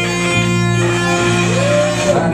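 A live rock band playing an instrumental passage with electric guitars over bass guitar. In the second half a guitar note bends up and holds.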